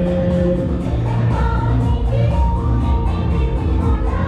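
A group of singers performing a song through a PA system, with amplified backing music keeping a steady beat.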